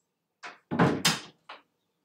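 Knocks and thuds: a short knock, two loud bangs in quick succession, then a last knock, all within about a second.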